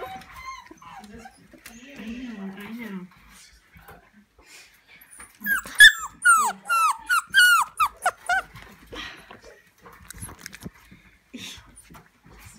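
Young puppies whining: a quick run of about nine high yelps, each sliding down in pitch, for about three seconds in the middle.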